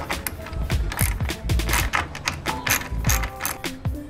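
Hand socket ratchet with a 10 mm socket undoing a radiator fan-shroud bolt: a series of quick clicks from the pawl, over background music.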